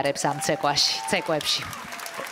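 A man speaking in Spanish.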